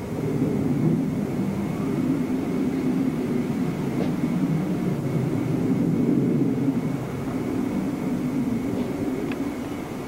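Wind buffeting a camcorder microphone: a steady rumbling noise that swells and eases in gusts, with a faint steady high whine underneath.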